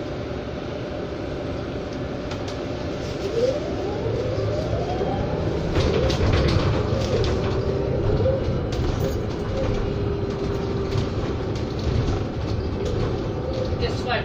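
Cabin ride sound of a Proterra BE40 battery-electric bus: the drive motor's whine rises in pitch as the bus speeds up a few seconds in, then wavers and levels off into a steady tone. Road rumble runs underneath, with bursts of interior rattling in the middle.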